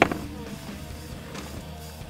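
A white plastic chair set down on a concrete walkway, its legs giving one sharp knock at the very start. Background music plays throughout.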